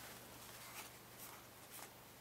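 Very faint rubbing of wet 400-grit sandpaper, wrapped around a soft eraser block, over a lacquered rosewood fingerboard, with a few light scrapes.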